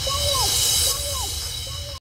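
Electronic dance music: a synth figure of falling notes repeats a little more than once a second over a low bass. It gets quieter in the second half and cuts off at the very end.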